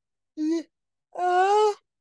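A person's wordless voice: a short vocal sound, then a longer held one that rises slightly about a second in.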